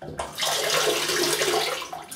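Water running from a bathroom tap into a sink. It starts abruptly and runs steadily, with a short break near the end.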